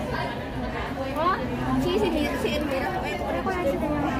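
Chatter of several women's voices talking at once, none of it clear enough to pick out as words, over a steady low background hum.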